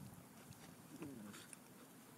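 Two dogs play-wrestling, faint, with one short, wavering dog vocalization about a second in.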